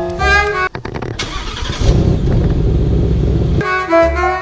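Ford Mustang GT's five-litre V8 engine, a low steady rumble lasting about two and a half seconds after a few clicks, with jazz music playing briefly before it and resuming near the end.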